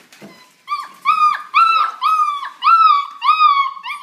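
A puppy whining in a series of high, repeated cries, about two a second, starting just under a second in, each with a slight upward bend at the start that then slowly falls away.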